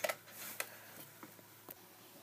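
A few faint, sharp clicks and light knocks in a quiet small room, three of them spread over two seconds.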